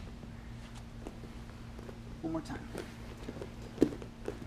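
Bare feet and bodies shifting on foam grappling mats as two grapplers get up and reset, with a few soft taps and one sharper thump near the end, over a steady low room hum.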